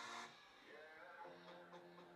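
Faint rock song playing quietly, with a held chord coming in about a second in.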